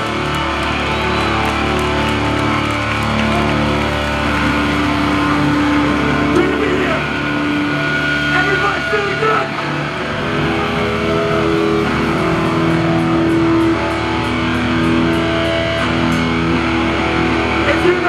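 A hardcore punk band playing live through a club PA: loud distorted electric guitars and bass holding long chords that change every second or two, with shouted vocals.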